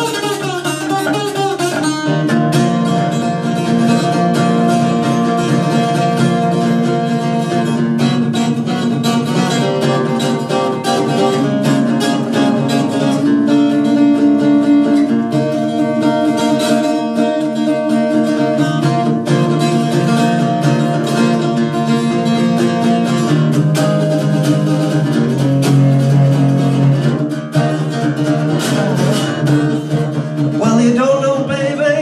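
Acoustic guitar playing an instrumental break: picked notes and chords over a steady run of low bass notes.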